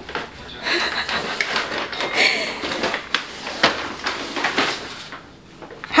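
Brown paper grocery bag, stuck around a puppy's neck, rustling and scraping on a tile floor as the dog moves, with irregular crinkles and scuffs.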